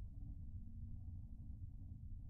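Faint, steady low hum with a couple of thin steady tones and nothing else: background room tone on the broadcast audio.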